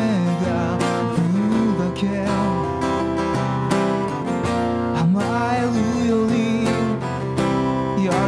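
Live acoustic guitar strumming chords behind a man singing a pop ballad into a microphone, his voice gliding and wavering through long phrases.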